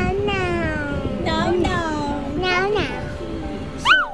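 A toddler's high-pitched wordless vocalising: about four long, gliding calls, the last one rising sharply near the end.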